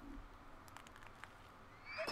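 Near silence: faint room tone with a few faint ticks. Just before the end, a faint rising tone begins.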